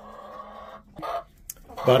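Hen clucking: a low, soft grumbling call for about the first second, then quiet until a voice comes in near the end.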